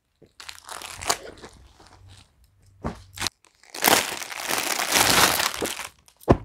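Folded suit fabric and its plastic packaging rustling and crinkling as the pieces are handled and swapped, with a few sharp clicks in the first half. The rustling grows louder and steadier for the last two seconds.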